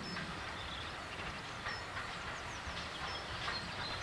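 Small birds chirping and calling over a low, steady rumble.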